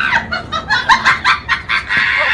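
A run of short, rapid clucking calls, hen-like cackling.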